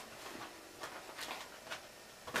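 Faint rustling and a few soft, brief scuffs of items being handled and drawn out of a cloth drawstring bag.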